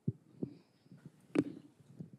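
A few short, soft low thumps, with one sharper click about a second and a half in, over faint room tone.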